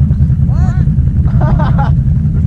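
Can-Am Renegade XMR 1000R ATV's V-twin engine idling with a steady low rumble, with short bursts of voice over it twice.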